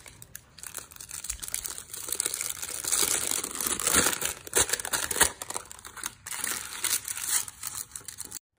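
A sheet of baking paper being scrunched up by hand, a dense crinkling that builds to its loudest in the middle, then eases as the paper is pressed into a round cake pan.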